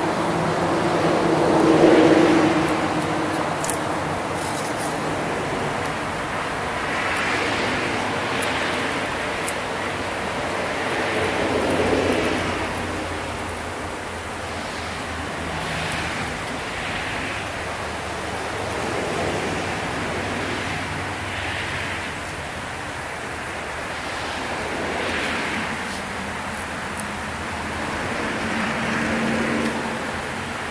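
Steady outdoor road-traffic noise that swells and fades every few seconds as vehicles pass, with a few faint clicks from handling.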